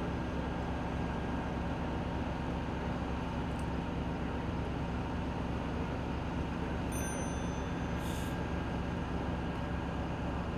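A steady low mechanical drone, like a nearby engine or machinery running at an even speed, with a short hiss about eight seconds in.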